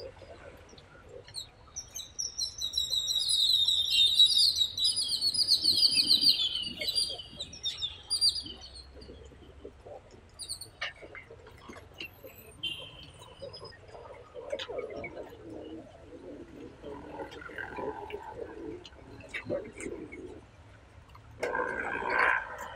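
Many birds chirping together in fast, overlapping high calls, loudest in the first half and dying away by about nine seconds in; a faint murmur of distant voices follows.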